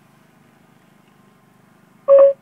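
Faint, steady background hum inside a car cabin, with no music or voice.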